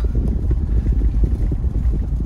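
Steady low rumble of a Jeep Wrangler in motion, heard from inside the cabin: engine and tyre noise while driving on an unpaved dirt road.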